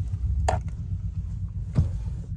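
Two short sharp clicks, about half a second and just under two seconds in, over a steady low rumble.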